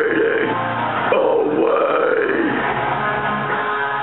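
Harsh screamed vocals into a handheld microphone over a loud heavy rock backing track; the vocal line ends about two and a half seconds in and the band carries on.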